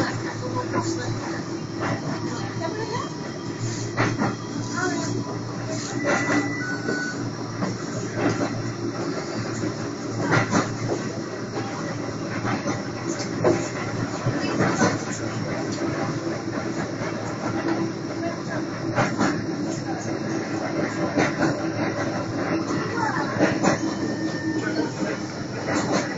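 Blackpool tram running along its track, heard from inside the car: a steady running noise with irregular knocks and rattles from the wheels and body, and a brief high squeal about six seconds in.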